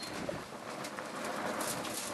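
Wood fire crackling in an open fire basket, with a steady rushing hiss from the flames and frequent small snaps.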